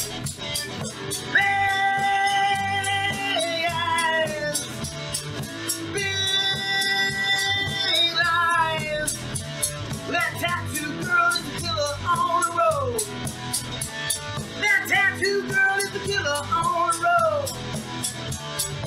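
Live country-rock band: acoustic guitar, bass and a steady percussive beat, with long held sung notes that slide down at their ends, then shorter falling vocal phrases.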